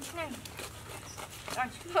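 Short high-pitched vocal cries that fall in pitch: two at the start and a louder group near the end.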